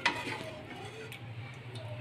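A few light clicks and ticks of a metal ladle against an aluminium pot as curry is scooped out, the sharpest at the very start, over a steady low hum.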